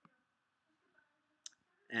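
Two sharp computer mouse clicks, one at the start and one about a second and a half in, over faint room noise.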